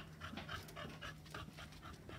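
A dog panting quickly and evenly, about three breaths a second, close to the microphone.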